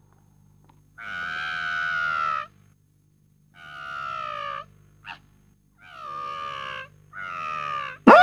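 A baby crying in four wails with short pauses between them, the first the longest and loudest, and a brief yelp between the second and third.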